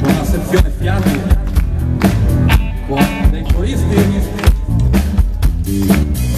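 A rock band playing live through a PA: drum kit keeping a steady beat under bass, electric and acoustic guitars.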